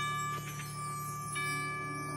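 Marching band music: the band holds a low sustained chord while a ringing bell tone is struck twice, at the start and again a little over a second in.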